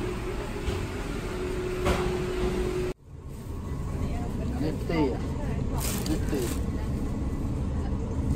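Market indoor ambience: a steady low hum with a held tone, cut off suddenly about three seconds in, then a low background rumble with indistinct voices.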